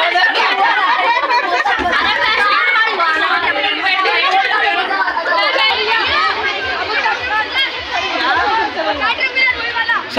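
Several people talking at once: overlapping conversational chatter, with no other sound standing out.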